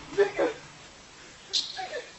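Two short, high cries that slide down in pitch, one just after the start and one near the end.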